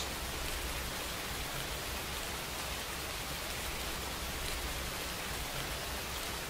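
Steady rain, an even hiss of falling rain with no change in level.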